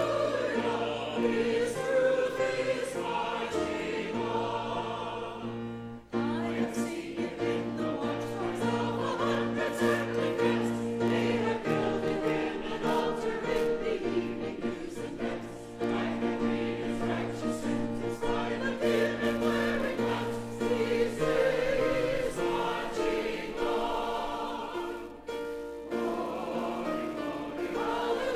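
Church choir singing an anthem with instrumental accompaniment, its long-held low notes sustained under the voices, with brief breaks between phrases about six seconds in and near the end.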